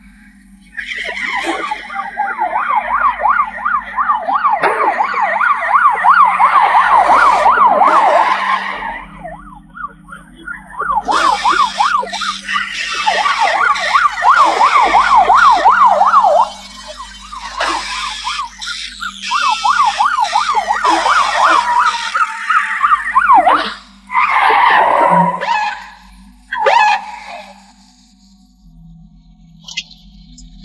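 Police siren in a fast yelp, its pitch swinging rapidly up and down, sounding in several loud stretches with short breaks between, over a low steady hum.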